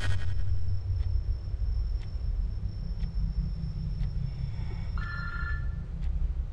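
Soundtrack of a low, steady drone with a faint tick once a second, like a clock ticking, under a thin high steady tone. About five seconds in, a short ringing tone sounds briefly.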